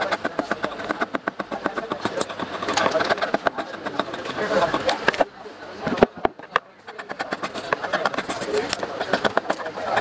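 A steel blade scraping and chipping at the willow of a cricket bat's handle splice in quick, rhythmic strokes, about eight a second. The strokes break off for a moment near the middle, where a few sharp knocks sound, then pick up again.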